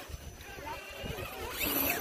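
Faint background chatter of people talking, over low noise on the microphone.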